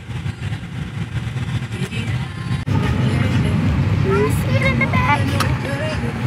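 Low, steady road rumble inside a moving car's cabin. About a third of the way in it cuts abruptly to a louder rumble, and voices talk over it in the second half.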